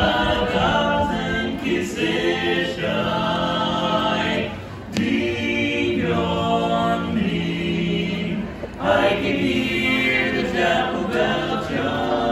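Barbershop quartet of four men singing a cappella in close harmony, holding long chords with short breaks between phrases about four and nine seconds in.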